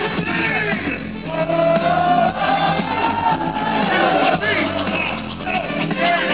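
Live hip-hop band playing with drums and vocals, heard loud from the crowd with the upper frequencies cut off. A single note is held from about one to four seconds in.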